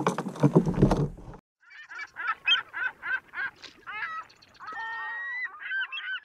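A loud burst of rough noise and thumps that cuts off abruptly, then a quick run of short, pitched bird calls, about four a second, ending in a few longer calls.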